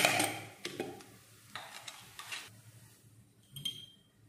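Cumin seeds hitting hot oil in a nonstick pan and sizzling in short hissy bursts, loudest as they go in at the start. A brief clink comes near the end.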